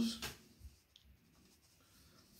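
A spoken word trails off, then a quiet small room with a couple of faint, short clicks about halfway through.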